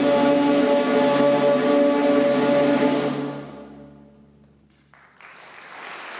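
A period-instrument orchestra holds the final chord of a piece, which fades away about three seconds in until it is almost silent. Audience applause begins about five seconds in.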